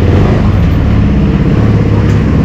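KTM 390 Adventure's single-cylinder engine running steadily at idle, a loud low drone.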